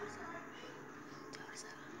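Faint, murmured voices, low in level, with no clear words.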